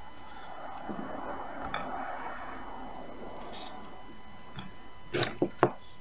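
Light clicks and knocks of Oreo cookies being handled in a ceramic dish, ending in three sharp clicks close together near the end. A faint steady electrical whine runs underneath, a fault in the recording.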